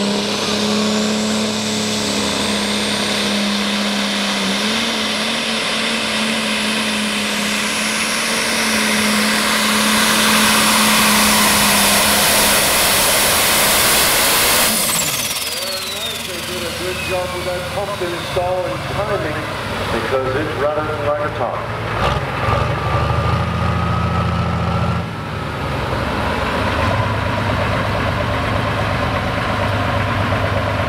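Turbocharged diesel engine of a John Deere Super/Pro Stock pulling tractor at full throttle under the load of the sled, with a high turbo whine that climbs as it launches. At the end of the pass, about halfway through, the throttle comes off and the turbo whine winds down. Voices follow, and then the engine idles steadily.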